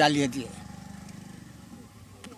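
A man's voice for the first half second, then a faint, steady, rapidly pulsing engine hum, like a small motor vehicle running, that fades slightly toward the end.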